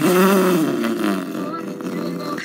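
A sudden burst of loud laughter that fades over about a second and a half.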